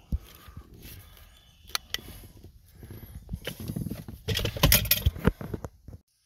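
Handling noise from work on a convertible soft top's rail and cable: scattered clicks, knocks and rustling, busiest about four to five seconds in, ending abruptly.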